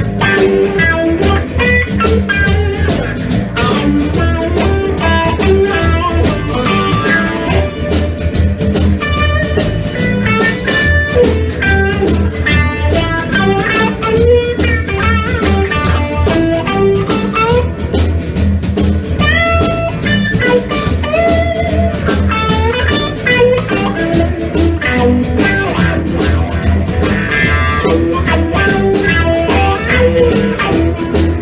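Live blues band playing without vocals: electric guitar lines over electric bass and drum kit in a steady repeating groove.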